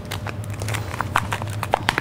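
Irregular light clicks and taps, a few each second, over a steady low hum.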